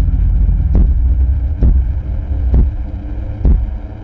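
Horror-trailer sound design: a deep, loud drone with a heavy pulse about once a second, like a slow heartbeat. The drone drops away just before the end.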